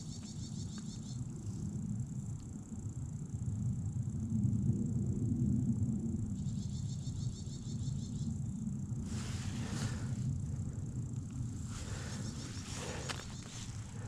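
Wind buffeting an action camera's microphone: a low rumble that swells in the middle and eases again. In the second half, a few brief rustling noises.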